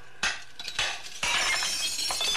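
Radio-drama sound effect of a window pane smashed with a rock: two sharp knocks, then glass shattering from just past the middle.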